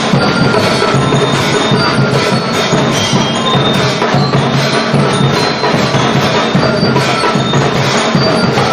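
Percussion band with lyres playing: two metal-bar lyres struck with mallets ring out a melody over a steady beat of snare drums, surdos and bass drums.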